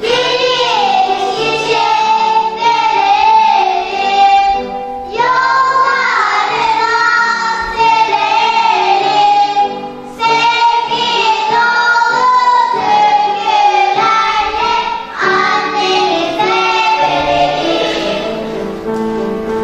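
Children's choir singing, in phrases with short breaks about five, ten and fifteen seconds in.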